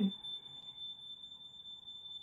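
A steady high-pitched tone, held at one pitch without a break, over faint background noise.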